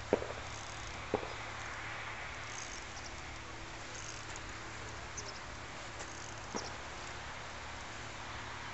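A few sharp clicks from handling a surfcasting rod and spinning reel while the line is worked through the rod guides: one right at the start, one about a second in, and a smaller one near the end. They sit over a steady hiss of background noise.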